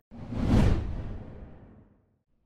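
A whoosh sound effect for an animated logo intro: it swells to a peak about half a second in, then fades away over the next second and a half.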